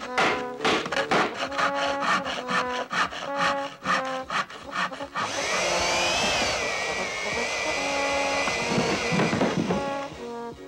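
Hammer blows on a nail in wood, about three or four a second, over brass background music. About five seconds in, a power tool motor starts and runs steadily with a whine that rises and then dips, stopping near the end.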